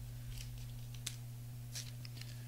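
Trading cards being handled, giving three short, soft swishes and clicks as card slides against card, over a steady low hum.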